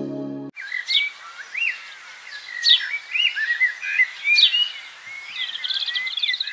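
Music ends abruptly about half a second in. It is followed by birdsong: whistled notes with three sharp downward-sweeping calls, about 1.7 seconds apart, and a fast trill near the end.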